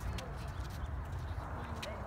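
Faint voices of a group of children outdoors over a steady low rumble, with a few sharp clicks.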